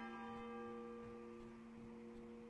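A single stroke of a church bell, faint, struck right at the start and ringing on. Its higher tones die away within about a second and a half while the low hum lingers.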